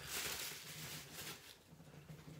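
Plastic bubble wrap rustling and crinkling as a box is unwrapped from it, fading away over the first second or so.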